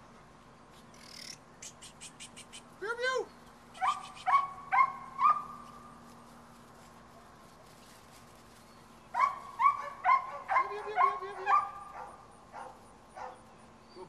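Seven-week-old puppies yipping in short, high-pitched bursts as they play: one rising-and-falling yelp about three seconds in, a quick run of four yips, then after a pause a longer string of yips near the end. A quick run of faint ticks comes just before the first yelp.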